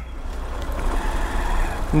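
A Honda NXR 160 Bros motorcycle's engine running as it moves off slowly in traffic, with a rushing street and wind noise over a steady low rumble, growing louder.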